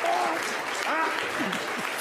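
Studio audience applauding steadily, with a man's voice breaking in over the clapping.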